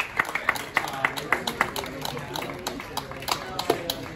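Scattered applause from a small group of spectators after match point: separate, uneven hand claps several times a second, with people talking underneath.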